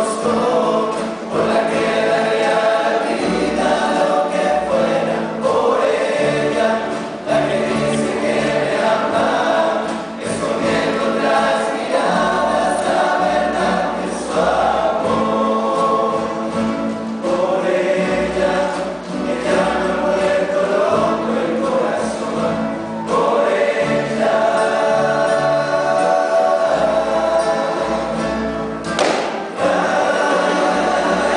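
A rondalla singing a song together in male chorus, accompanied by several acoustic guitars and a double bass.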